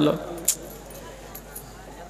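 A pause in a man's speech over a microphone: his voice trails off at the start, a single short click comes about half a second in, then only a low steady background hiss remains.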